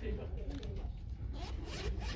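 Paper pages of a coloring book being flipped by hand, a dry papery rustle with a louder sweep near the end, over a low steady hum.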